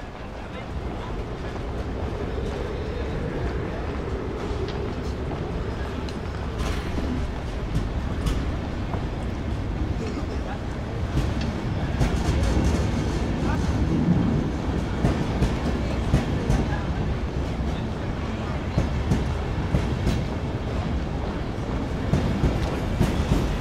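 A train running close by: a steady low rumble with rail clatter, the clicks growing thicker from about seven seconds in and the rumble getting louder about halfway through.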